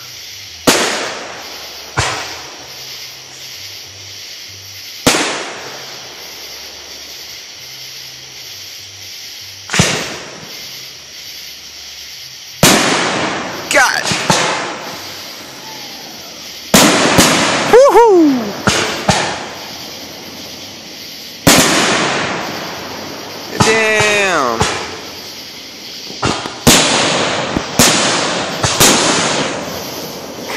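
Aerial firework shells bursting overhead at close range, each a sharp bang followed by a long rolling echo. The bursts are a few seconds apart at first and come thicker from about halfway through.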